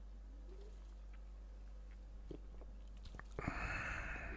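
Close-miked mouth sounds of a person drinking beer from a glass bottle: faint swallows and small mouth clicks, then near the end a short breathy exhale right against the microphone.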